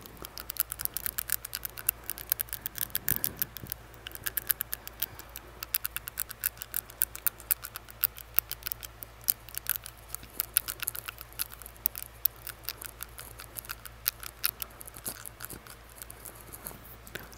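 Close-up mouth clicks of a tongue-piercing barbell tapping against the teeth, a rapid irregular run of sharp clicks, several a second, without pause.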